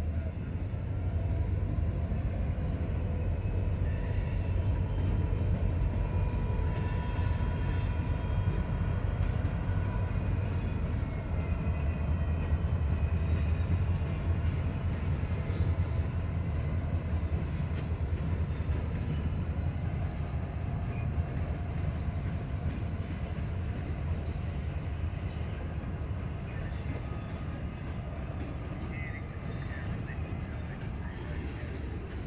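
Norfolk Southern freight train moving past: a steady low rumble of diesel locomotives and rolling freight cars, louder through the middle and easing off near the end, with faint wheel squeals now and then.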